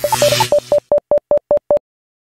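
Electronic title sound effect: a short burst of static mixed with beeps, followed by a run of short, evenly spaced beeps at one pitch, about five a second, that stop just before the end. The beeps accompany on-screen text being typed out letter by letter.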